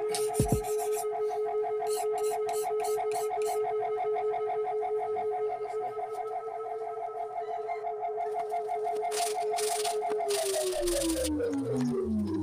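Background music: a held electronic tone that stays on one pitch for about ten seconds, then slides down in pitch near the end.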